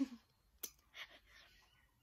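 Small mouth sounds from someone eating: a sharp click about half a second in, then a softer smack about a second in.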